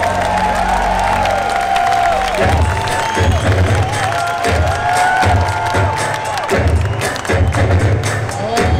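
Live funk band playing loud through an audience recording, with a pulsing bass line coming in about two and a half seconds in and voices or horns carrying the melody above it. The crowd cheers and claps along.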